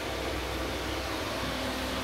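Steady whir of a running fan: a constant low hum under an even hiss.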